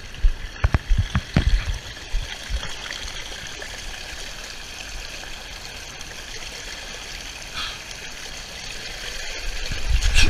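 Water running steadily down the flume of a water slide, a continuous rushing hiss, with a few knocks in the first couple of seconds. It grows louder near the end.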